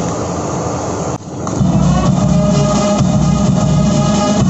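Ceremonial band music with sustained held notes over a strong low accompaniment. It starts abruptly about a second and a half in, after a short stretch of noisy background.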